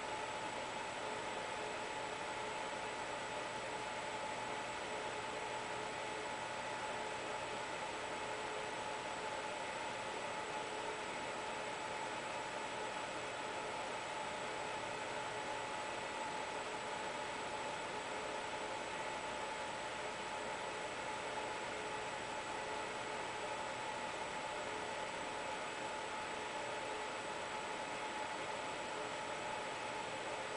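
Steady hiss with a few faint, constant high whining tones and no distinct events: the room tone of a small room, with no audible strokes of the brush.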